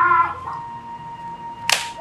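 A man's loud shouted call, a name called out, ending just after the start. About a second and a half later there is a single sharp snap, over a steady background music drone.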